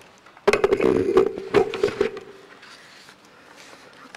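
Knocking and rustling handling noise close to a desk microphone, a quick run of clicks over a steady hum lasting about a second and a half.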